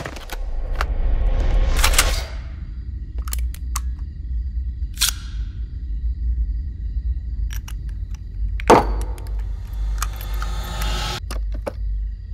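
Film soundtrack sound design: a low steady drone with scattered clicks and knocks, a swelling rush that cuts off about two seconds in, a short sweep near five seconds, and a sharp hit just before nine seconds.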